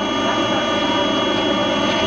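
Illumina NovaSeq 6000 DNA sequencer with its motorised flow-cell tray sliding closed after loading: a steady, even machine hum with a thin high whine over it.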